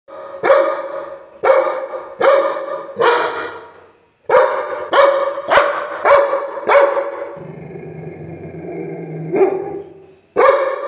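Labrador retriever barking in loud, sharp barks, about ten in all with a short pause after the first four. Between the last barks comes a low, steady growl.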